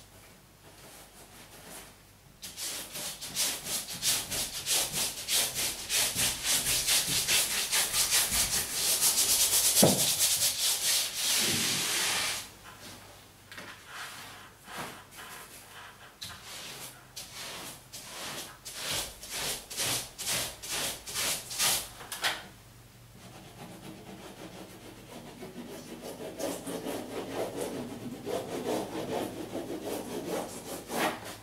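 Wallpaper being brushed and rubbed flat against a wall: quick, rhythmic brushing strokes over the paper that start a couple of seconds in and are loudest through the first half, then give way to softer, intermittent rubbing.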